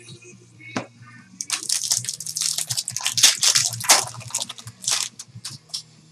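Trading cards and their pack being handled at close range. After a single click, there is a dense run of quick rustling and crackling from about a second and a half in until shortly before the end.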